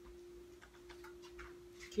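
Faint ticking of a wall clock in a quiet room, over a steady low hum.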